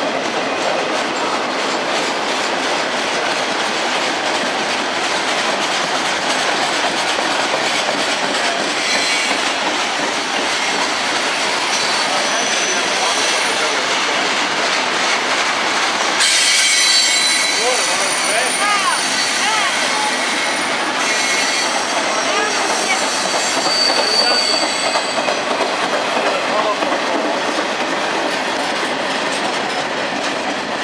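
Freight train cars rolling steadily past close by, their wheels running on the rails. High-pitched wheel squeal comes and goes, strongest for several seconds just past the middle.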